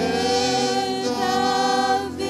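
Slow worship singing by voices with little or no accompaniment, holding long notes; a new phrase starts right at the beginning and is held until near the end.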